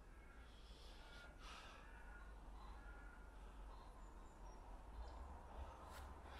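Near silence: faint outdoor ambience with a steady low rumble and a few faint, short distant bird calls.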